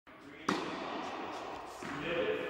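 Tennis racket striking the ball on a forehand: one sharp pop about half a second in, ringing on in the reverberant indoor tennis hall.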